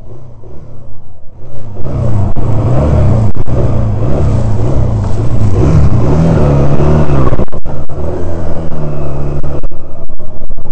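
Honda CD185T 180cc four-stroke twin engine, running quietly at first, then revving up and down over and over from about two seconds in, before settling to a steadier note near the end.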